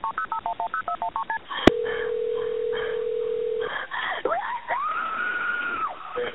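Recorded emergency phone call: a fast run of touch-tone dialing beeps, a click, and a steady tone for about two seconds. Then, about four seconds in, a woman's scream rises and is held high until near the end.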